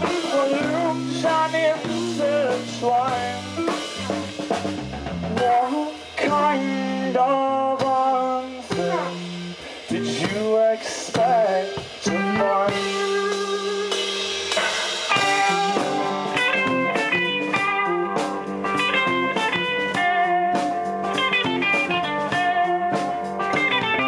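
Live hard rock band playing an instrumental passage on electric guitars, electric bass and drum kit. In the first half the lead guitar plays bent, sliding notes, and from about halfway it moves into quicker runs of separate notes.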